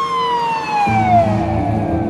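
A siren wailing: its pitch falls steadily through one long, slow downward sweep. About a second in, a low music bed comes in underneath.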